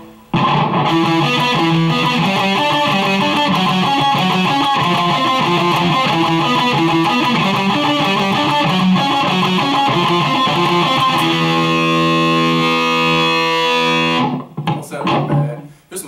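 Ibanez electric guitar being played: a fast run of changing notes for about eleven seconds, then a held chord ringing for a few seconds that is cut off suddenly, with a few quieter scattered notes near the end.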